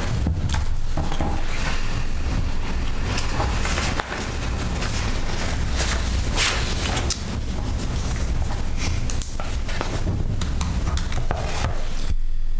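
Sheets of paper rustling and being handled on a table close to the microphones, in a series of short bursts, over a steady low rumble.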